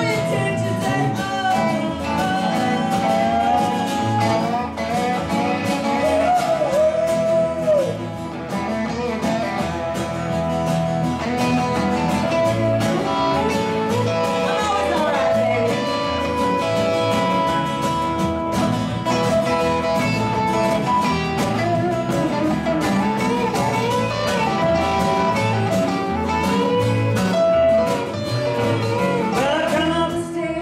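A live band playing a rock-country song: electric and acoustic guitars, bass guitar and a cajon, with a lead line that bends up and down in pitch over a steady beat.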